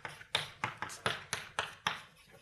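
Chalk writing on a blackboard: a quick run of short, sharp tapping strokes, about four a second.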